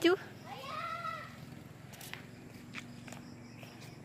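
A cat meowing once, faintly: a single call about a second long that rises and then falls in pitch. A few faint footstep ticks follow.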